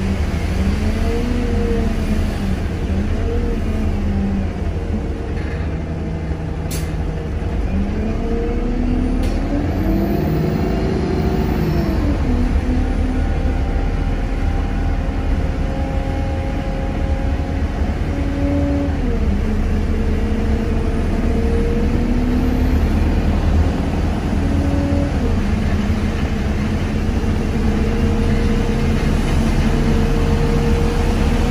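Single-deck diesel bus on the move, heard from on board. It has a steady low rumble, and its engine note rises and falls several times as it accelerates and changes gear, most plainly in one long climb and drop about eight to twelve seconds in.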